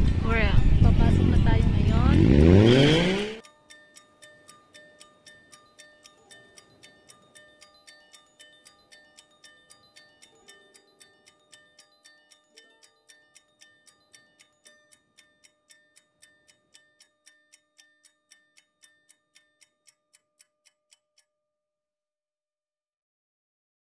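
A loud noise with a steeply rising pitch that cuts off suddenly about three seconds in. Then soft background music of short, evenly paced chime-like notes, about four a second, over held tones, thinning out and stopping shortly before the end.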